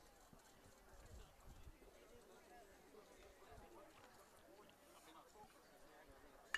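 Near silence, with faint, distant chatter of voices.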